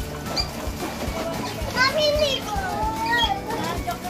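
Children's voices shouting and squealing as they play in a paddling pool, over background music with a steady beat.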